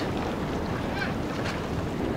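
Steady noise of wind on the microphone and the wash of the sea, with no distinct events.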